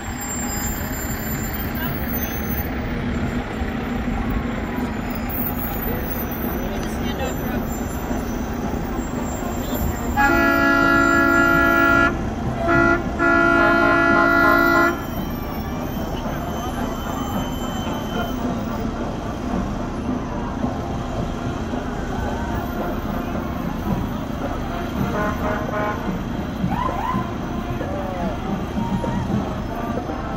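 A fire engine's air horn blows three blasts about ten seconds in: a long one, a short one, then another long one. It is the loudest sound here, over steady engine and street noise.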